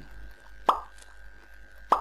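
Two short pops, one about two-thirds of a second in and a second just before the end, over a faint steady electrical hum.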